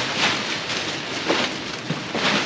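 Plastic bag and stored belongings rustling and shifting as a bundle is pulled down off the top of a stacked pile, with a couple of light knocks in the second half.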